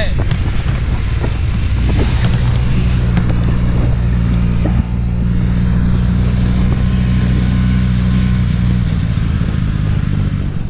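Snowmobile engine running at a steady drone while towing a sled across snow, heard from the sled behind it, over an even rushing noise of the ride.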